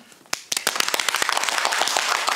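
A small group of about five people clapping their hands in welcome. After a brief lull, dense, steady applause starts about half a second in.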